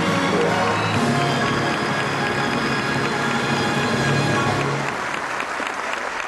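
A theatre orchestra playing the closing music of a stage musical while the audience applauds.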